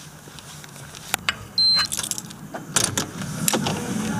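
Keys jangling and a door's lock and handle clicking as the door is unlocked and opened, with one short high electronic beep about one and a half seconds in, like an entry fob reader, over a low steady hum.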